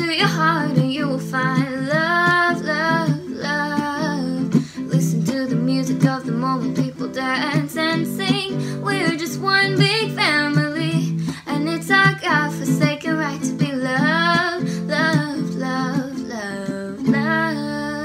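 Ukulele strummed in a steady rhythm, with a woman's voice singing over it.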